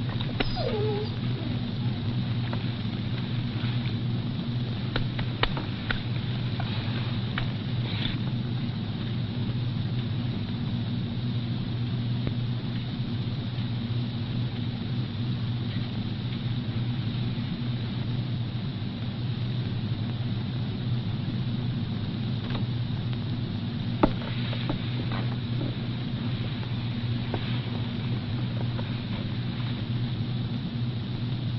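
Steady low drone of a car engine running, with a short falling squeal near the start and a few faint clicks, the loudest about 24 seconds in.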